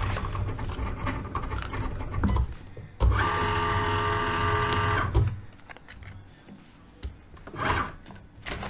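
Cricut cutting machine running: a low motor hum with small clicks, then a sudden steady whine for about two seconds from three seconds in as its motors drive the carriage and mat. Near the end comes a short brush of noise as the cutting mat is handled.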